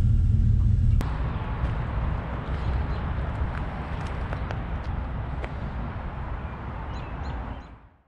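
A vehicle engine idling, heard from inside the cab, cuts off about a second in. It is replaced by outdoor ambience: a steady low rumble and hiss, with a few bird chirps near the end, before the sound fades out.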